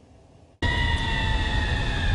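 A short lull, then about half a second in a sudden cut to an emergency vehicle siren: several steady tones falling slowly in pitch over a low engine rumble.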